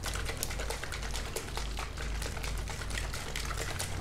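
A bottle of acrylic pouring paint being shaken hard, giving a quick, irregular liquid clicking and rattle throughout, over a steady low hum.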